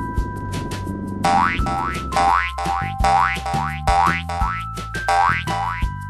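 A quick run of cartoon boing sound effects, about ten short rising sweeps at roughly two a second, starting just over a second in, over children's background music with a steady beat.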